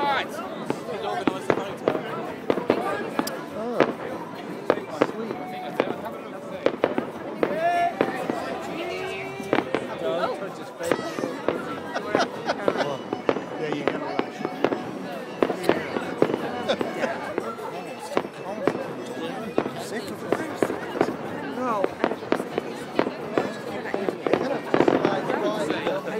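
Aerial fireworks going off, with many sharp bangs in quick, irregular succession.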